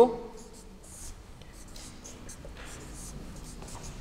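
Marker pen writing on a whiteboard: a run of short, quiet scratching strokes as a formula is written out.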